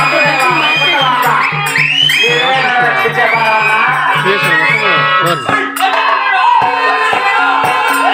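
Live folk-theatre music: a high voice singing in wide pitch glides over harmonium and a steady low drum pulse of about four beats a second. The pulse stops about five and a half seconds in, leaving a held harmonium note under the voice.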